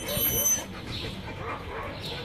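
A dog making short, soft whimpering sounds close up, loudest in the first half-second, then fading.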